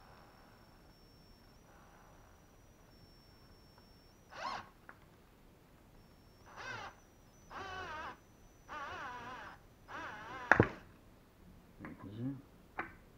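Cordless drill-driver driving a screw into a wooden post in five short bursts from about four seconds in, its motor whine wavering in pitch under load. A sharp knock near the end is the loudest sound.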